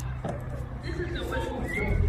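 Faint, indistinct voices in the background over a steady low hum.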